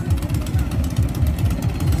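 Racing bangka outrigger boat engines running at the start, a loud, steady, low and rapid rumble.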